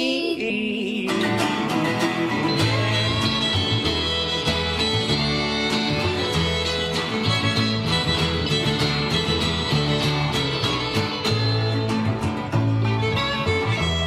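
Acoustic string band playing an instrumental break: fiddle, strummed and picked acoustic guitar, mandolin, and upright bass walking under them.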